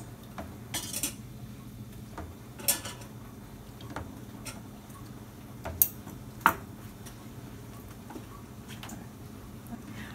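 Metal kitchen tongs clicking and clinking against a clear plastic container as hard-boiled eggs are lifted into cold water. The clicks are scattered and light, with the two sharpest coming a little past halfway.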